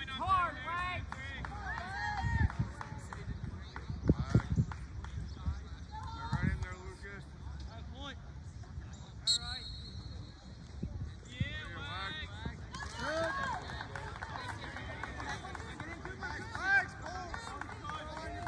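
Distant shouts and calls of players and spectators across an outdoor lacrosse field, with a brief referee's whistle about nine seconds in as the faceoff starts.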